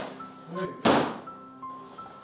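A door swinging shut, with one loud thud a little under a second in, over background music with sustained tones.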